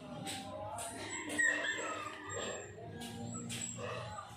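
Animal calls, several overlapping, some sliding in pitch, with the loudest about a second and a half in.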